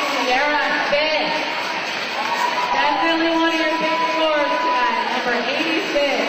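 Speech: voices talking in a large hall, with one voice held on a drawn-out note through the middle.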